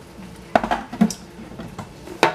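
Kitchen clatter of seasoning containers and utensils being handled: two sharp clinks about half a second apart, then a fainter one near the end.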